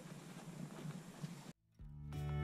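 Faint outdoor background noise with a few soft ticks, then a brief cut to silence and background music fading in near the end.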